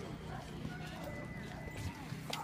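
Indistinct background voices of people talking, over a steady low hum.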